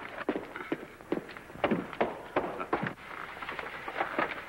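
Footsteps on a hard floor: a string of irregular steps.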